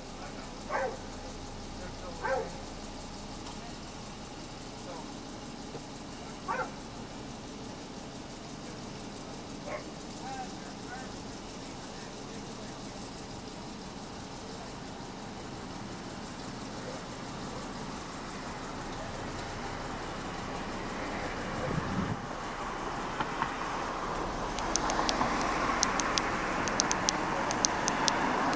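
A car passing along the street, its tyre and engine noise growing steadily louder over the last ten seconds. Short snatches of distant voices come in the first ten seconds.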